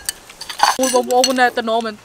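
Metal spoons clinking against ceramic bowls during the meal. From just under a second in, a woman's voice holds a long, level note that bends near the end.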